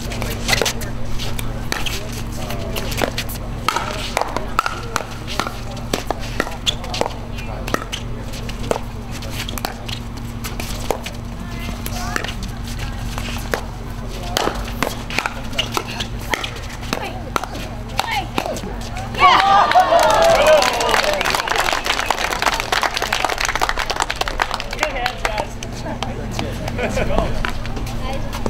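Pickleball paddles popping against a plastic ball in a rally, sharp hits at irregular intervals over a steady low hum. About 19 seconds in, spectators cheer and applaud for several seconds as the point ends.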